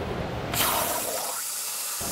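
A low hum, then about half a second in the plasma torch of a Torchmate 4400 CNC plasma cutting table fires with a sudden hiss that holds steady as the arc pierces and cuts the steel plate.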